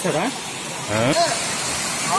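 Steady rushing of a waterfall spilling over rock ledges, growing brighter and fuller about a second in, under a man's speech.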